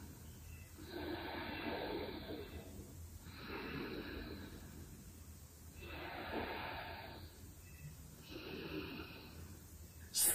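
A woman's slow, deliberate breathing held through a yoga pose: four soft, long breath sounds, each about a second and a half, with short pauses between.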